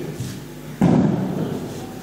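A single sudden thump about a second in, dying away over about a second.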